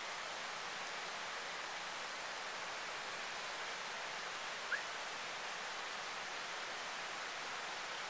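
Steady rushing of a small forest creek, with one short, high chirp about halfway through.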